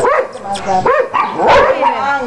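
A German Shepherd-type dog giving a string of short whining, yelping calls that rise and fall in pitch, with one louder bark about one and a half seconds in.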